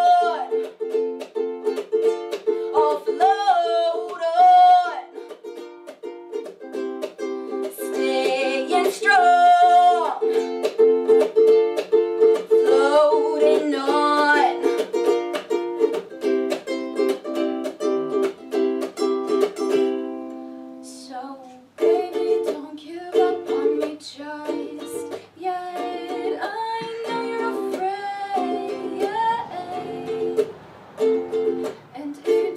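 Ukulele played in a steady rhythmic chord pattern, with a woman singing over it in the first part. The playing thins out briefly about two-thirds through, then picks up again with more singing near the end.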